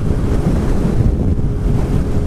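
Loud, steady wind noise over a helmet-mounted microphone on a Kawasaki Vulcan S 650 motorcycle at freeway speed, about 80 mph, with the bike's parallel-twin engine droning underneath.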